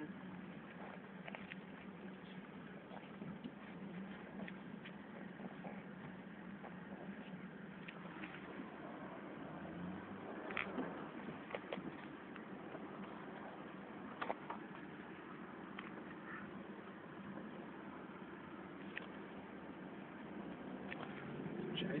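Steady road and engine noise heard inside a moving car, with a few short clicks about halfway through.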